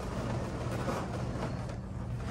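A steady low hum with a faint, even hiss, with no distinct knocks or clicks.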